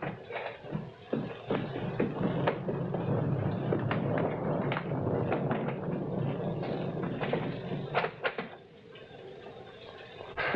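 Scuffling, rustling and irregular sharp knocks of a struggle on the floor, with a door being tried and rattled partway through; the noise dies down near the end.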